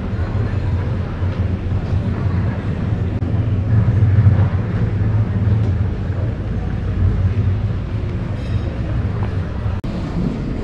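Steady low rumble of outdoor town ambience with faint voices of passers-by mixed in, broken by a brief dropout near the end.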